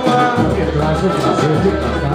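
Live samba: a man singing into a microphone over a band with plucked strings and a steady bass line.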